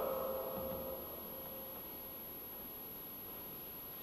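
Faint room tone of a large reverberant church: the last spoken word fades away in the echo during the first second, leaving a steady low hiss with a faint steady high-pitched tone.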